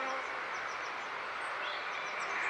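Honeybees buzzing around an opened top bar hive, a steady hum. The colony has been stirred up by a comb breaking during the inspection.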